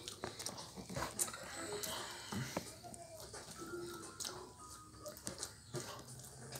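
A television's cartoon soundtrack heard across a small room: music and sound effects with scattered sharp clicks.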